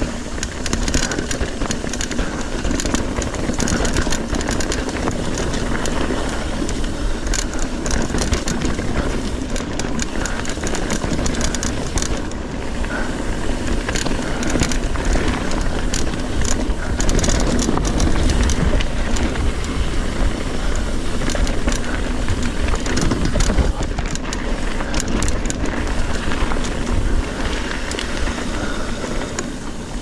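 Trek Fuel EX 7 mountain bike riding over a rough, rocky trail, heard from a camera mounted on the rider: a steady low wind rumble over the microphone, with the tyres on rock and dirt and rapid clattering and rattling from the bike.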